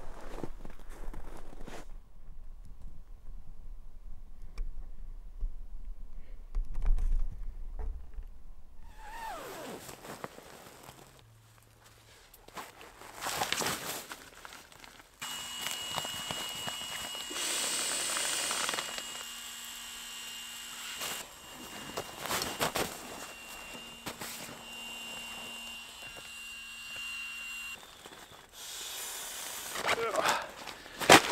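Footsteps in snow and the rustle and knock of nylon camping gear being handled as sleeping gear is laid out in a tent. Through the middle stretch a faint steady high tone runs, breaking off a few times.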